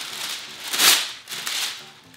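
A sheet of parchment paper rustling and crackling as it is handled and laid down on a baking tray, loudest about a second in.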